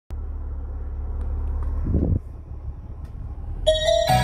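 Low steady rumble inside a car cabin with a brief soft thump about two seconds in. Near the end the song starts playing through the car's ZR Prestige speaker system.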